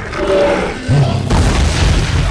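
Film action-scene soundtrack: heavy, deep booms and low rumbling, strongest in the second half, over dramatic music.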